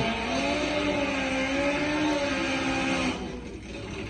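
Top Fuel nitro drag motorcycle engine held at high revs during a smoky burnout, its pitch rising slightly and then holding steady before it drops away about three seconds in.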